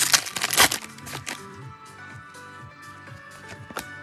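Trading-card pack wrapper being torn open and crinkled, loudest in about the first second, followed by fainter clicks of cards being handled. Background music plays throughout.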